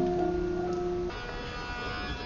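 Javanese gamelan playing. A cluster of struck bronze notes rings on and slowly fades, and about a second in, higher sustained tones take over.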